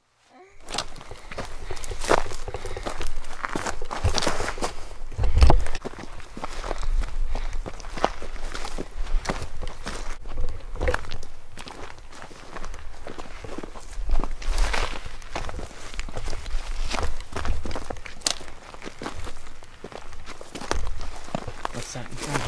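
Footsteps of people walking over rocky, gravelly ground through dry scrub: an uneven run of steps and brush contacts that keeps on without a break.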